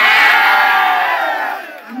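Crowd of supporters shouting together in one loud collective cheer, which swells up, holds for about a second and dies away after about a second and a half.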